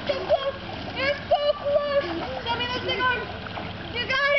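Water splashing in a swimming pool as a toddler swims, with high-pitched voices calling out in short phrases over it.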